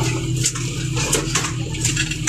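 Farm tractor's diesel engine running steadily, heard from inside the cab, with short clattering rattles as it drives over a rough forest track.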